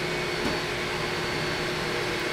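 Exhaust fan of an enclosed 20 W laser engraver running steadily, drawing air out through the vent hose: an even rush of air with a faint low hum under it.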